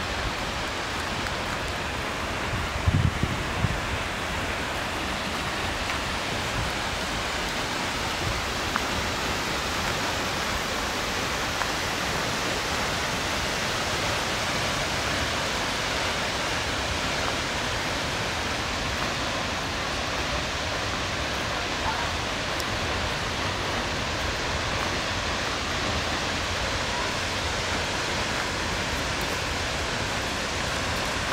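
Steady rushing of a tall waterfall, Seljalandsfoss, slowly growing a little louder and fuller as the path nears it. A few brief low bumps about three seconds in.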